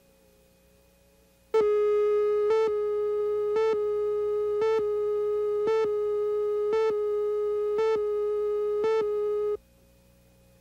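Videotape slate tone: a steady mid-pitched electronic tone with a slight pulse about once a second. It starts about one and a half seconds in and cuts off suddenly after about eight seconds.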